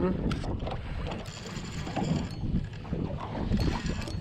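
Spinning reel being cranked to bring in a hooked fish: a fairly even mechanical rattle of the reel's gears and handle.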